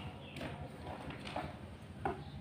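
A few soft knocks and faint rustling as a product box and its packed contents are handled by hand and set down on a carpeted floor.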